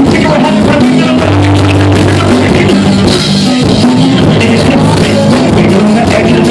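Live rock-rap band playing very loud: a vocalist on microphone over electric bass guitar and drum kit.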